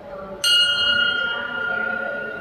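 A temple bell struck once about half a second in, then ringing on with a steady high tone that slowly fades.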